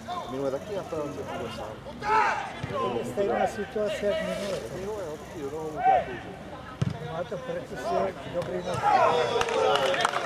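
Men shouting and calling out across an outdoor football pitch during play, the voices indistinct and coming in short bursts that grow busier near the end. One short thud sounds about seven seconds in.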